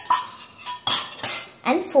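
Steel kitchenware clinking and clattering against a steel pot as dry fruits are tipped into cake batter. A ringing clink comes at the start, followed by several lighter knocks and rattles.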